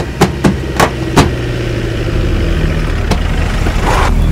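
Fingers tapping on a car's metal bonnet: four quick taps in the first second or so and one more near the end, over a vehicle engine's low, steady running that slowly grows louder.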